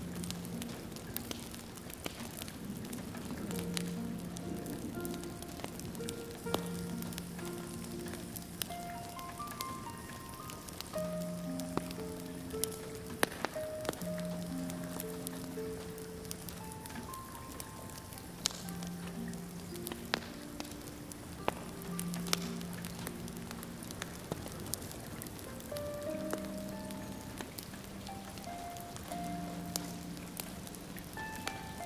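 Soft, slow instrumental melody of held notes over steady rain pattering on a window and a crackling wood fire in a fireplace, with scattered sharp pops.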